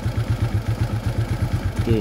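A 125 cc single-cylinder scooter engine, fitted with a modified KLX-type carburettor, idling with a low, even, rapid beat. The idle is slow and regular, a sign the carburettor is delivering fuel properly.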